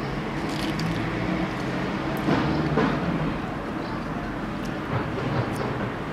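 Street background noise: a steady low engine hum from traffic under a general outdoor haze, with a few faint clicks.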